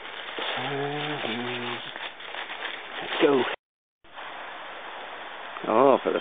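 Steady rushing of a fast-flowing stream below a bank. A man's brief wordless voice sounds about a second in, the sound drops out for a moment just past halfway, and he starts speaking near the end.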